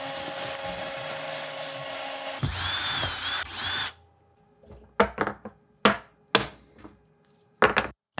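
A vacuum hose sucking sawdust off a CNC router bed: a steady drone that grows louder and rushier for about a second and a half before cutting off about four seconds in. Then a cordless drill runs in about five short bursts.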